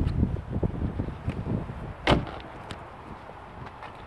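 Car door shut with one solid thud about two seconds in, after a second or so of rustling and low knocks.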